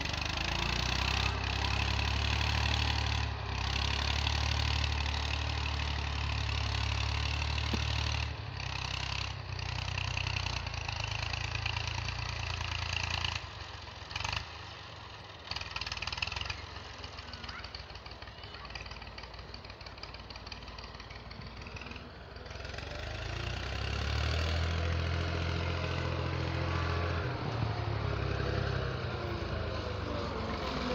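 Farm tractor engine running steadily as it pulls a cultivator through the soil. It grows fainter from about the middle as the tractor moves off, then louder again over the last several seconds.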